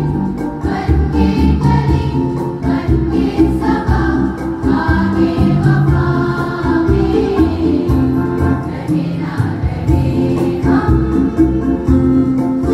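A girls' school choir singing a song together, many voices at once.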